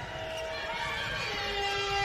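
Sustained electronic tones over an arena's sound system as regulation time runs out: one held note, then a lower one with a bright, buzzy edge from about a second and a half in, over a low hum of hall noise.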